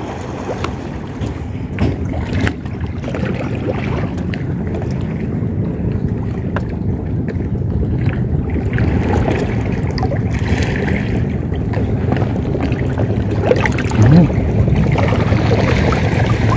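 A steady low rumble of wind on the microphone at the water's edge, with a few light clicks.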